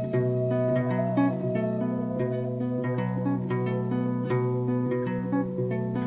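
Acoustic guitar playing a steady picked accompaniment, with no singing.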